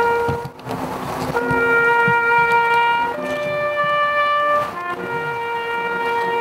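A solo brass instrument plays a slow tune in long held notes, stepping up to a higher note midway and back down near the end. It is the memorial tune for a minute of silence at a commemoration.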